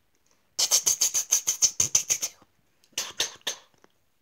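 A person imitating machine-gun fire with the mouth: a fast hissing rattle of about eight shots a second lasting nearly two seconds, then a shorter burst of a few more shots.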